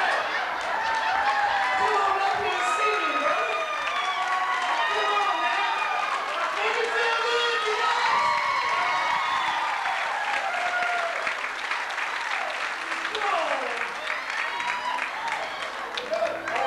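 A live audience cheering, whooping and shouting over one another, with clapping that grows thicker in the last few seconds.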